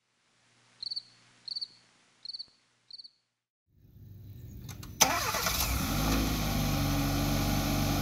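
Four short, high chirps in the first three seconds; then, about five seconds in, a 2019 Hyundai Elantra GT N Line's turbocharged 1.6-litre four-cylinder starts suddenly on a remote-start command and settles into a steady idle.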